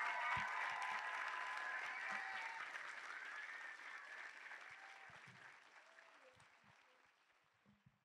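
Audience applauding, the sound fading away steadily until it is gone about seven seconds in.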